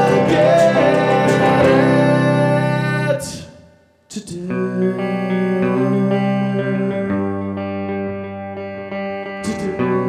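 Electric guitar playing sustained chords in a live looping performance; the sound fades out around three seconds in to a moment of near silence, then a new guitar passage starts about four seconds in and carries on.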